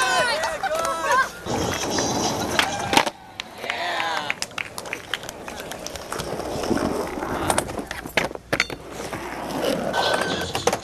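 Skateboard wheels rolling on asphalt and a ramp, with repeated sharp clacks of the board hitting the ground, under people's voices.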